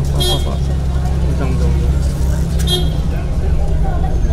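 Road traffic of motorcycles, scooters and cars, with a steady low engine rumble. Two brief high-pitched beeps come about a quarter second in and again near three seconds.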